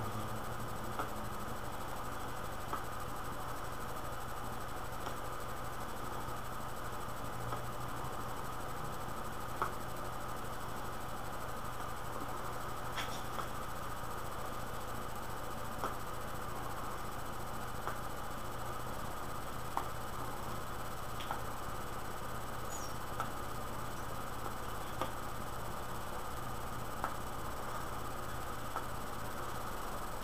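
A steady hum and hiss from the recording, with faint short clicks every couple of seconds.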